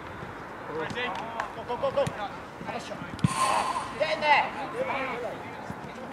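Football players calling out to one another over thuds of a football being kicked, the sharpest kick about three seconds in.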